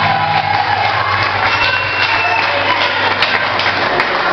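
A live band's amplified instruments sounding loosely under crowd noise, with a steady low hum, in a large echoing hall.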